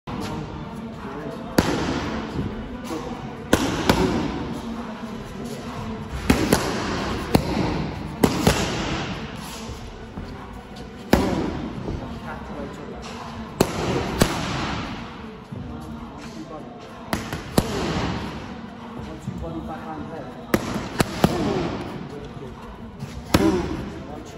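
Boxing gloves striking focus mitts: sharp slaps in combinations of one to three, each ringing briefly in the room.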